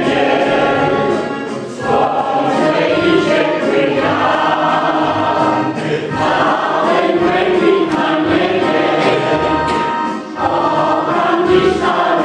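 Choral music: a choir singing in sustained phrases, with a brief dip between phrases about two seconds in and again near the end.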